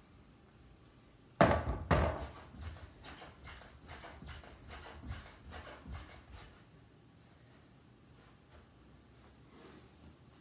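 Two sharp knocks about half a second apart, then a quick, even run of lighter thumps for about four seconds: feet landing during jumping jacks on a living-room floor.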